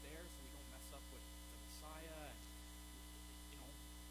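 Steady low electrical mains hum, with a faint man's voice speaking briefly at the start and again about two seconds in.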